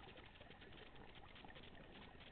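Faint underwater ambience over a coral reef: a steady, dense crackle of tiny clicks with no breaks.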